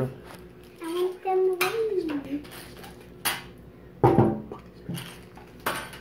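A few sharp clinks and knocks of hard objects against a glass tabletop, the loudest and heaviest about four seconds in. A brief wordless hum of a voice comes early on.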